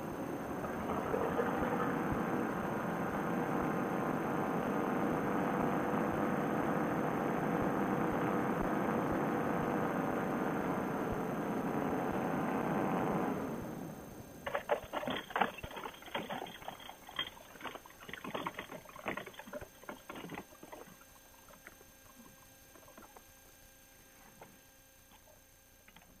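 Vittorazi Moster two-stroke paramotor engine on a trike running steadily at low power, dying away about 13 seconds in. Then a string of knocks and rattles from the trike rolling over bumpy grass, thinning out to near quiet.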